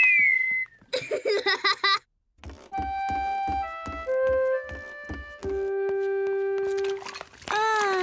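A cartoon child's whistle trails off, followed by a short vocal sound. After a brief silence comes a short animated-cartoon music cue: a few stepping notes over a steady low beat, ending on one long held low note.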